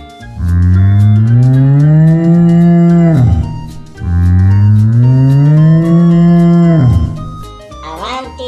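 A cow mooing twice, two long moos of about three seconds each, each rising in pitch and then dropping sharply at the end.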